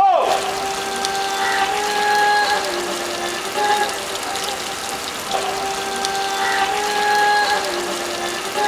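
Water from a hose streaming down a mirror backdrop, a steady splashing hiss, under a held melodic tone that steps down in pitch and repeats about every five seconds. A brief swooping burst sounds right at the start.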